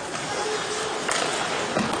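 Rink sound of an ice hockey game in play: skates scraping on the ice, with a sharp knock of the puck about a second in.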